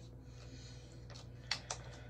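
A few light clicks and crinkles from a mask sachet being handled as it is gripped to squeeze serum out, the sharpest a little past halfway, over a faint steady room hum.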